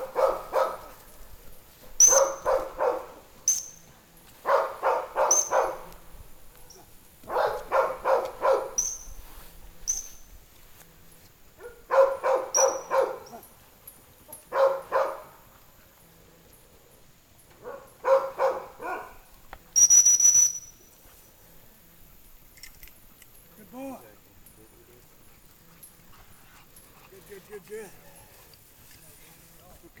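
A dog barking in repeated bouts of several quick barks, with short, sharp single blasts of a dog-training whistle between them and one longer whistle blast about twenty seconds in. The whistle blasts are the handler's signals to the retriever working a blind retrieve.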